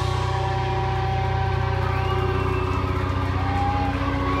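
Distorted electric guitar amplifiers holding a steady, droning low note with no drums, with a faint high feedback whine that rises and falls about halfway through.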